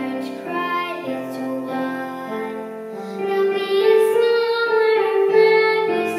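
A young girl singing solo, accompanied on a keyboard.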